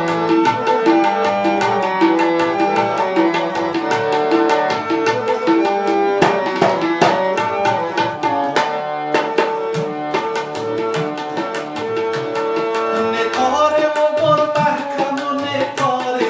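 Harmonium and tabla playing an instrumental passage: a sustained reed melody over fast, dense tabla strokes. The drumming drops out briefly about halfway through.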